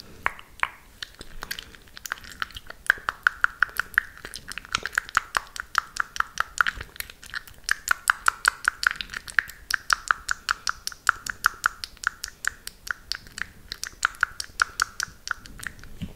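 Fast wet mouth clicks and pops made into a hand cupped over the mouth, close to a microphone. The clicks come about six a second with a hollow, cupped tone, and grow denser about two seconds in.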